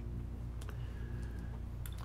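Room tone with a steady low hum and a couple of faint clicks, one about a third of the way in and one near the end.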